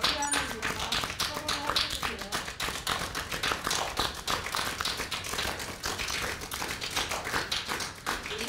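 Rapid, irregular tapping on a wooden floor by several hands, several taps a second, with faint voices underneath.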